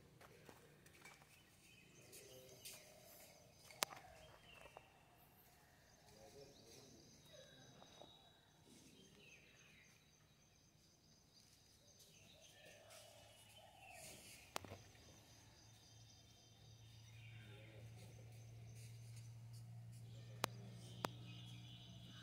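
Near silence: faint outdoor ambience with a low steady hum, occasional faint bird chirps and a few sharp clicks.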